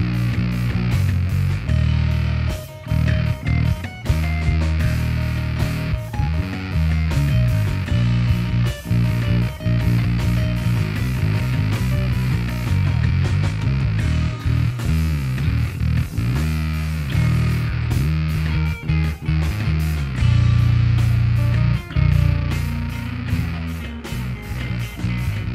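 Fretless Warwick Thumb 5 five-string bass guitar playing a live bass line through a Sinelabs Basstard fuzz pedal: fuzzed low notes that change often, with a few sliding notes about two-thirds of the way in.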